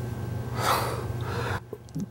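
A man drawing one audible breath in, about half a second in, over a steady low hum that drops away near the end.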